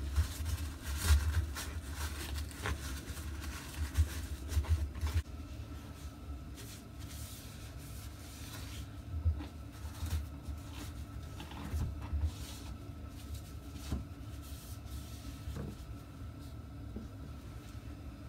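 A paper tissue and fingers rubbing and working inside a front-loading washing machine's rubber door seal, with scattered soft knocks and handling bumps. It is busiest in the first few seconds, then quieter, with a faint steady high tone underneath.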